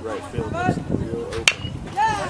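A metal baseball bat striking a pitched ball about a second and a half in: a single sharp crack with a brief ringing ping.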